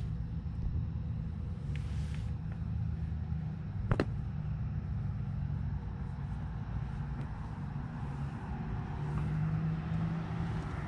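A steady low motor drone with a single sharp click about four seconds in.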